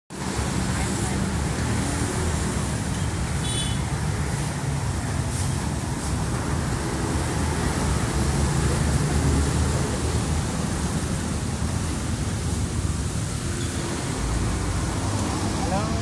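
Steady street traffic noise: a constant low rumble of car engines and tyres from passing road vehicles.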